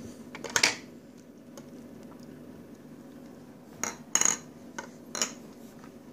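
Light clicks and knocks of a plastic toy dough roller against a plastic play table, over a faint steady hum. A couple come near the start, and the loudest, a quick cluster, about four seconds in, with one more about a second later.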